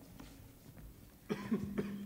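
A few short sharp coughs about a second and a half in, then a voice holding one low, steady note.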